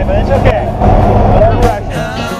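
Steady engine and wind noise inside a small skydiving plane's cabin, with raised voices over it.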